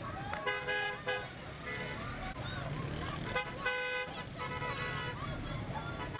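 A vehicle horn honks twice, about three seconds apart, over steady street noise and a crowd's voices.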